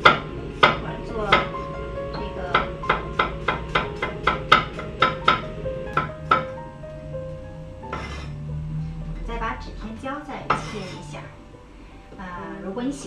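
Chinese cleaver slicing single-clove garlic on a wooden cutting board: sharp knocks, a few spaced ones at first, then about three a second, stopping about six and a half seconds in. Background music plays underneath.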